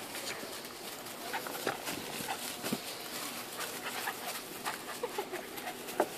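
An American Staffordshire Terrier puppy and a small tan dog play-fighting on grass: scuffling, rustling and mouth clicks, with a few short whining sounds.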